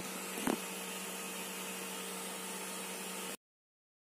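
Small cooling fan running with a steady hum and hiss, with a brief click about half a second in; the sound cuts off abruptly shortly before the end.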